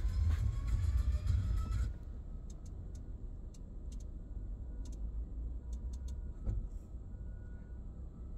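Bass-heavy soundtrack of a video played by an aftermarket car tablet through the car's speakers, cutting off suddenly about two seconds in. After that, a low steady rumble in the cabin with scattered short clicks.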